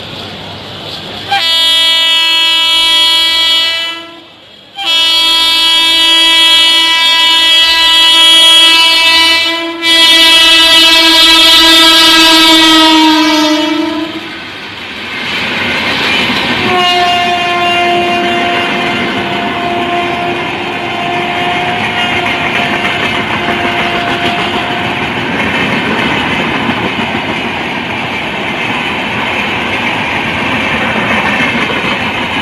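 Electric locomotive's horn sounding a long, loud blast of several tones as an express train approaches at speed, with a short break about three seconds in and a slight drop in pitch as it ends. Then comes a quieter single horn note over the continuous rumble and clatter of the coaches' wheels passing on the rails.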